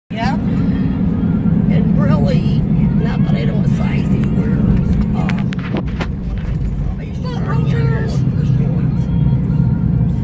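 Steady low rumble of a car's road and engine noise heard inside the cabin while driving on a wet highway. A faint voice comes and goes over it, and there are a couple of short clicks about six seconds in.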